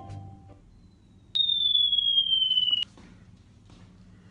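A single long, high electronic beep that falls slightly in pitch and cuts off suddenly after about a second and a half, starting just over a second in. Music with mallet-instrument notes fades out at the start.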